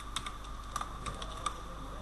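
Computer keyboard typing: a quick, uneven run of keystrokes in the first second and a half, over a steady hum.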